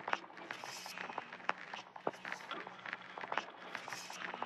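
Two layered texture loops: a heavily processed vinyl-crackle texture and a loop of quantized, effects-laden Minecraft skeleton noises. Together they give scattered irregular clicks and crackles over a faint low hum.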